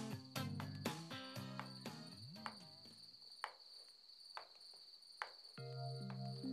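Crickets chirping steadily at night under soundtrack music: picked guitar notes fade away over the first few seconds, leaving mostly the high cricket trill, and new music with long held chords comes in near the end.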